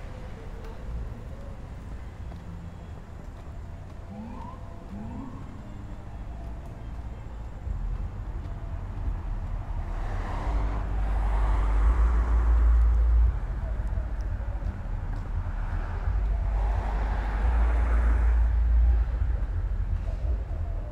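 Road traffic: a steady low rumble, with two louder swells of vehicles passing, about halfway through and again near the end.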